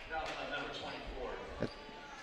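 Faint voices echoing in a gym, with a single basketball bounce on the hardwood court about a second and a half in.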